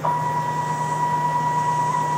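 Stepper motors of a homemade CNC router driving the axes toward their home switches during a reference-all homing move. The whine steps up in level as the motion starts and then holds at one pitch.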